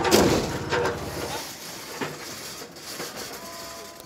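A loud crash right at the start as a car lifted by an excavator comes down: one heavy metal impact that dies away over about a second and a half.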